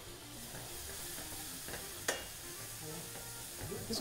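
Chopped shallots, minced garlic and butter sizzling quietly in butter and olive oil in a stainless steel sauté pan, with a spoon stirring and one sharp tap on the pan about halfway through.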